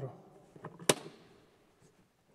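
Main switch on a church-bell electrical control panel being turned on: one sharp click about a second in with a short echo, and a couple of fainter clicks around it.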